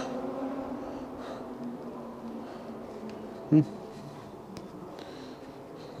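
A steady low hum of indoor background noise, with a short voiced "hmm" about three and a half seconds in.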